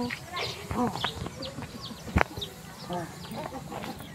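Outdoor lane ambience: faint distant voices, scattered short high chirps and animal sounds, and one sharp click about two seconds in.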